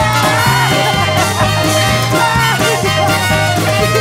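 Swing-cabaret band music with no words sung: a full band playing loud and steady, with a repeating bass line under a lead melody that slides up and down.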